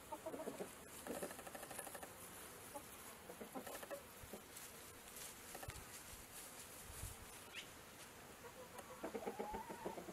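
Domestic chickens clucking softly, with a few short scattered clucks. A louder run of pitched calls comes near the end.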